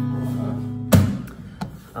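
Acoustic guitar's final strummed chord ringing out, stopped by a sharp thump about a second in, followed by a few faint knocks.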